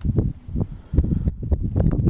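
Wind buffeting a handheld camera's microphone in irregular low rumbles, with a few faint clicks.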